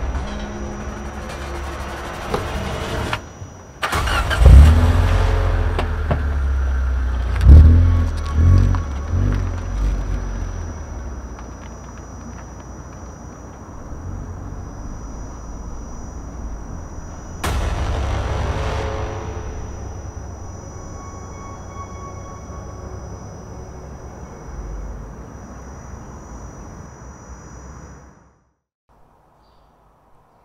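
A car engine revving in several sharp bursts, then running steadily, mixed with a film soundtrack's music; the sound cuts out shortly before the end.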